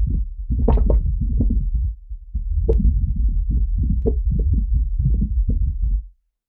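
A candle-flame recording processed into a dense, bass-heavy sound effect through EQ and bass-enhancing plugins: a deep, continuous low rumble under irregular flickering crackles. It dips briefly about two seconds in, has one sharp click near the middle, and cuts off suddenly at the end.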